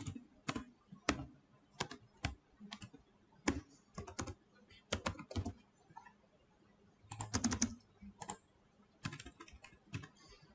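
Computer keyboard typing: irregular key clicks with short pauses between them and a quick run of keystrokes about seven seconds in, as a word is typed, mistyped and backspaced.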